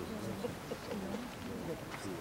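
Quiet, indistinct murmur of a low voice speaking, with faint background noise from a seated crowd.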